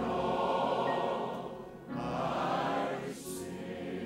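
A large group of men and women singing a gospel hymn together in sustained phrases, with a brief breath between lines about two seconds in and again near three seconds.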